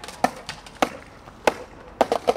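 Skateboard rolling on concrete paving, its wheels and deck giving three sharp clacks about half a second apart with fainter ticks in between.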